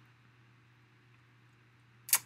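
Near silence: room tone with a faint steady electrical hum.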